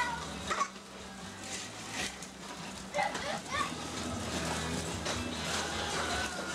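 Young children's squeals and wordless cries, a few short rising-and-falling calls over a faint steady low hum.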